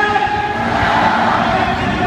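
Din of a packed stadium crowd, with pitched, echoing amplified sound carrying over it.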